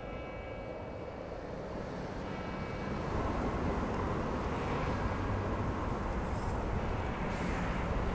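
A low, steady rumbling ambience that slowly swells in loudness. Faint thin high tones sit over it early on, and a brief airy hiss rises near the end.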